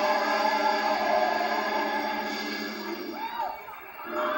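Gospel choir singing a sustained chord that fades away near the end, heard through a television's speaker.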